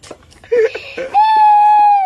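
A child crying: a few short cries, then about a second in a loud, long wail held on one pitch that drops away at the end.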